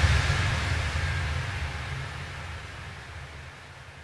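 Electro house breakdown: a wash of white noise over a low bass rumble, with no beat, fading away steadily like the tail of a crash or impact effect.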